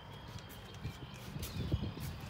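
Footsteps and knocks of someone climbing down out of a semi-truck cab: irregular low thuds with a couple of sharp clicks.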